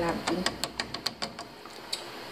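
A plastic spatula clicking and tapping against the side of a stainless steel saucepan while it stirs thick béchamel sauce: a quick run of sharp ticks, roughly four or five a second.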